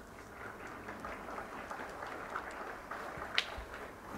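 Light, scattered applause in a hall following a player's introduction, with a sharper click about three and a half seconds in.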